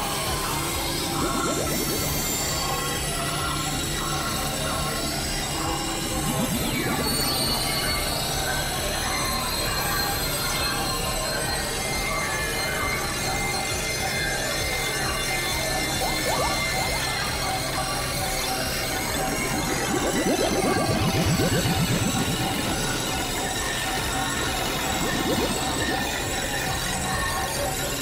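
Experimental electronic noise music from synthesizers: a dense drone with a steady low hum, scattered held high tones and noise, and a rapid ratcheting buzz that swells about twenty seconds in.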